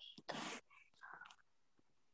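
Near silence with brief faint whispering or breathy voice sounds, one short hiss about a third of a second in and softer bits near the middle.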